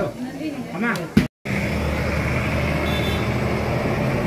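A steady low motor-vehicle engine hum that starts abruptly after a cut about a second in and runs on at an even level, following a short stretch of speech.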